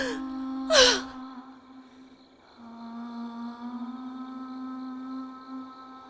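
Soft dramatic soundtrack music of long held notes, opening with two sharp breathy gasps about a second apart.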